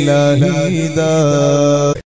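A man chanting in a drawn-out melodic voice, holding one note with a short waver about half a second in, then cutting off abruptly at the end.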